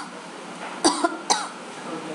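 A woman coughing twice, short and sharp, a little under a second in and again about half a second later.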